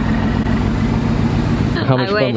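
Mercedes-AMG GT's twin-turbo V8 idling steadily, with speech starting near the end.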